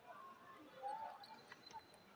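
Two faint, sharp clicks of a table tennis ball in a rally, bouncing off the table and off a paddle, the second about half a second after the first, over faint voices of onlookers.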